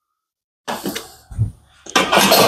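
Dead silence for the first part of a second, then a steel ruler scraping and being handled on a wooden cedar soundboard: a short scratchy scrape, a soft bump, and more scraping near the end.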